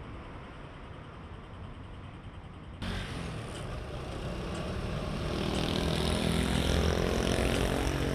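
Street traffic noise. About three seconds in it cuts abruptly to a louder take, and a vehicle engine grows steadily louder toward the end.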